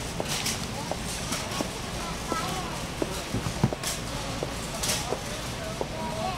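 Busy warehouse-store ambience: a murmur of shoppers' voices in the background with scattered clicks and knocks, the loudest about three and a half seconds in, and a few brief hissy rustles.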